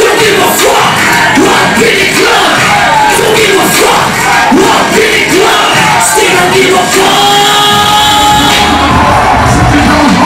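Live hip-hop concert: a rapper's voice over a DJ-played beat, with a crowd shouting and cheering along. About seven seconds in a long note is held, and heavy bass comes in near the end.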